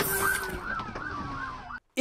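Police car sirens wailing and yelping over road noise, fading down and then cutting off suddenly just before the end.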